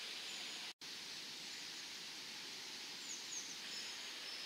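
Quiet outdoor ambience: a steady, even hiss with a few faint, high bird chirps, most of them a little after three seconds in. The sound cuts out completely for an instant just before one second in.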